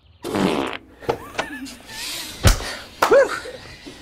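A woman breaking wind, a single buzzy fart lasting about half a second, just after she sits down on a car seat. A sharp thump follows about two and a half seconds in, with brief voices.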